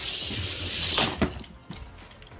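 Die-cast Hot Wheels cars running down plastic track with a steady hiss, then two sharp knocks about a second in as they hit the end of the track and land in the catch box.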